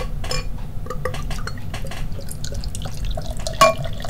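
Beer being poured from a bottle into a glass: liquid splashing and gurgling, with many small clicks and pops. A sharper glassy clink comes near the end.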